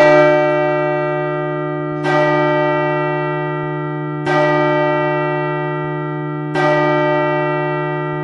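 A church bell tolling: four strikes a little over two seconds apart, each ringing on with a long, slowly fading hum.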